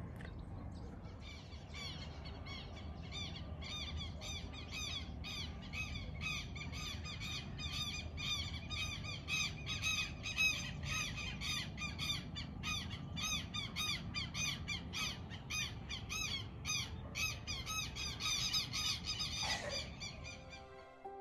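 A flock of birds calling over and over outdoors, two or three short arched calls a second, over a low steady outdoor rumble.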